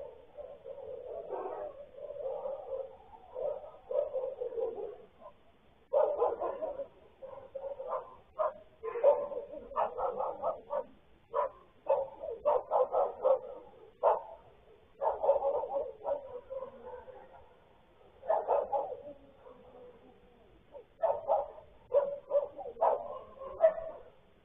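Dog howling and barking: a drawn-out, wavering howl through the first few seconds, then repeated clusters of short, sharp barks and yelps. The sound is thin, as picked up by a security camera's microphone.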